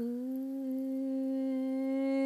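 A single voice humming one long, steady note. It scoops up briefly in pitch at the onset, then holds level and grows slightly louder.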